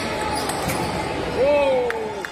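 Table tennis rally: a few sharp clicks of the ball striking bats and table over the hall's background noise, and one voice calls out loudly about one and a half seconds in.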